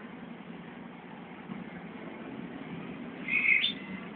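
Steady background noise, with one brief high chirp or whistle that steps up in pitch about three and a half seconds in.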